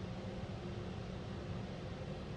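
Steady low hum under an even hiss, heard from inside a car's cabin at a touchless car wash while machinery runs.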